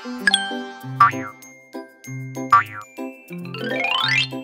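Cheerful children's cartoon music with a stepping melody, overlaid with cartoon sound effects: a sharp ding just after the start, two short boing-like swoops about one and two and a half seconds in, and a long rising whistle-like glide near the end.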